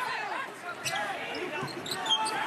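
Basketball dribbled on a hardwood court a few times, with sneakers squeaking and voices in the arena behind it.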